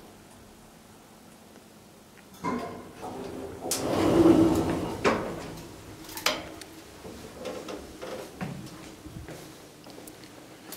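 KONE hydraulic elevator's stainless-steel car doors sliding open, a rumbling run of about two seconds that starts two and a half seconds in, followed by sharp clicks and knocks from the hinged landing door as it is pushed open and swings back.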